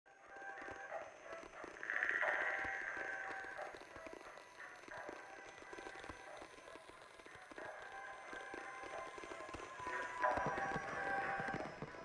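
Quiet atmospheric background music: held high tones over light clicking percussion, swelling about two seconds in and again near the end.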